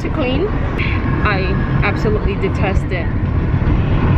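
Steady low road rumble inside a moving car's cabin, with a person talking over it.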